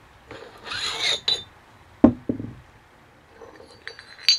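A steel bearing-puller sleeve being slid and handled on a splined Harley-Davidson transmission shaft: a metal scrape about a second in, a sharp metallic clank with a short ring just after two seconds, then a few light clinks near the end.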